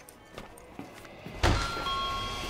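Quiet store ambience, then about a second and a half in a sudden deep boom with a low rumble that carries on under steady music tones: a trailer sound-design hit.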